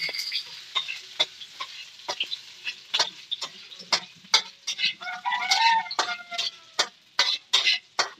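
A utensil scraping and tapping in a frying pan over a wood fire as chopped onion is stirred and sautéed in oil, with a faint sizzle; the strikes are sharp and irregular. A chicken calls in the background about five seconds in.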